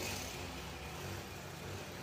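Faint, steady background rumble and hiss with no distinct events: room tone.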